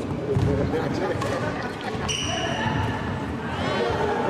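Badminton doubles rally on an indoor court: sharp racket hits on the shuttlecock and high squeaks from shoes on the court floor, with voices in the hall behind. A long squeak comes about halfway through and a few short gliding squeaks come near the end.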